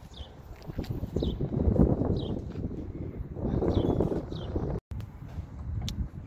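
Footsteps on gravel and handling noise on a phone microphone, with a bird giving short downward chirps about once a second. The sound drops out for an instant near the end.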